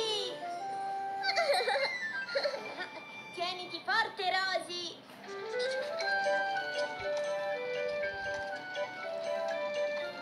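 Small children's giggles and high squeals over cartoon background music for about the first five seconds. After that a simple carousel-style tune of held, stepping notes plays on its own.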